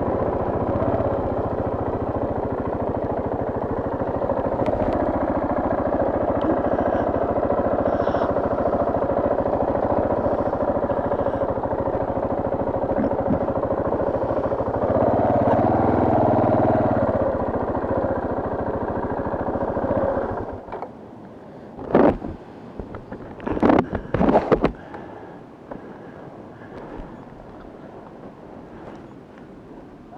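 Dual-sport motorcycle engine running under way on a gravel road. It rises briefly near the middle, then drops away about two-thirds of the way through as the bike comes to a stop. A few loud knocks follow, then a low steady background.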